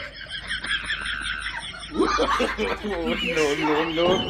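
Laughter: a rapid, high-pitched giggle for about two seconds, then a lower laugh that falls in pitch.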